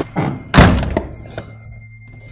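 A heavy dramatic boom hit over background music, about half a second in, after a smaller hit at the start, dying away within about half a second: a sound-design sting marking a shock revelation.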